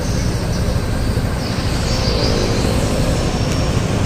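A vehicle engine running steadily at idle, giving a low, even hum.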